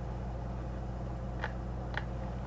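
Steady low electrical hum, with two short clicks about half a second apart in the second half.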